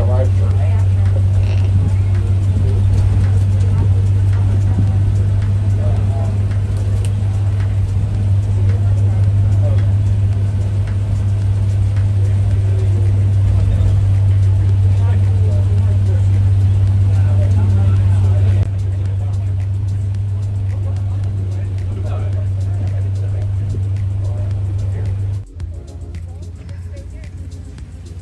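Steady low drone of a shuttle bus in motion, heard from inside the cabin, with indistinct passenger voices over it. It cuts off abruptly near the end, leaving a quieter mix of voices and music.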